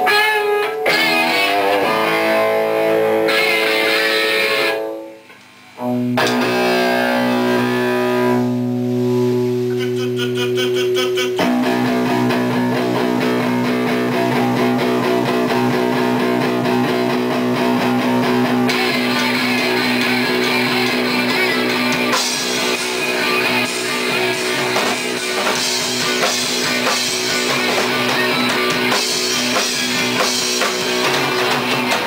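Live rock band: a distorted electric guitar opens a song, cuts out briefly about five seconds in, then the rest of the band joins about twelve seconds in and plays on, getting fuller and brighter after about twenty seconds.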